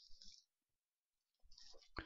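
Near silence in a pause of the voice-over, with a faint short click at the very end.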